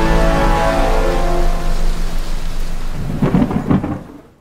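Thunderstorm sound effect, rain and rolling thunder, under held music chords that fade out about halfway through. The low rumble swells again near the end, then cuts away.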